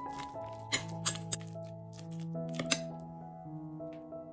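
Background music with held notes over a metal spoon scraping and clinking against a glass mixing bowl, stirring grated potato and chicken. The spoon sounds come several times in the first three seconds, the loudest just before one second in and near the three-second mark.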